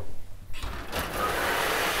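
Metal roller shutter being pushed up by hand, its slats rattling steadily as it rolls open, starting about half a second in.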